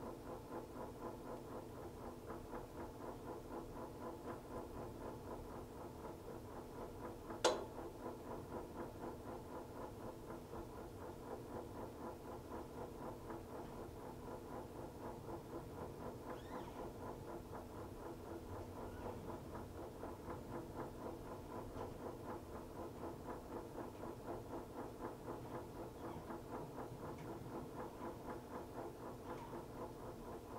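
Montgomery Ward Signature 2000 top-load washer running its wash, a steady mechanical hum that pulses evenly about twice a second as the agitator works the load. About seven seconds in there is one sharp click.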